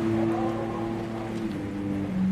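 Background music of held low notes, moving to a new chord about one and a half seconds in.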